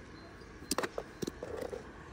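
A few faint, short clicks and taps a little under a second in, over low background noise.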